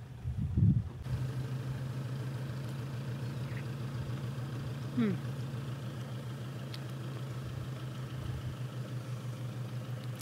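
A steady low engine hum with a faint regular pulse, like an engine idling nearby, growing louder about a second in. A short 'hmm' comes about five seconds in.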